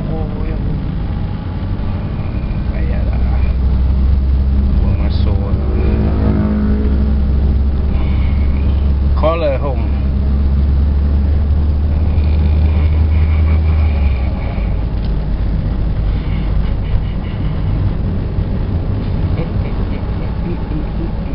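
Car engine and road noise heard from inside the cabin while driving: a steady low drone that grows stronger a few seconds in and eases off about two-thirds of the way through.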